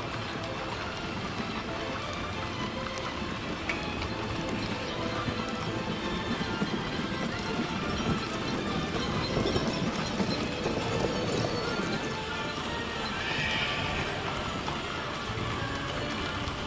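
Hooves of many horses clip-clopping on an asphalt street as riders and carriage teams pass, the hoofbeats overlapping in a continuous clatter.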